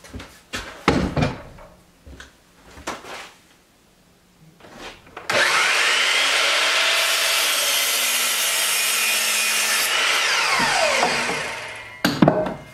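A round wooden post knocking a few times as it is handled on the bench, then an electric miter saw starting up suddenly about five seconds in with a rising whine, running loudly and steadily for about five seconds, and winding down with a falling whine.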